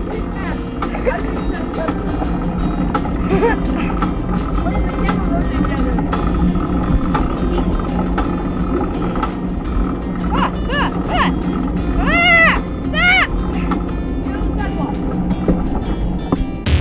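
Wind buffeting and road rattle on a handlebar-mounted camera as a tandem bicycle is ridden along pavement, with a few short voice calls about ten to thirteen seconds in.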